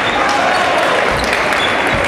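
Table tennis rally: the sharp clicks of the ball striking the bats and bouncing on the table, over the steady chatter and bustle of a crowded sports hall.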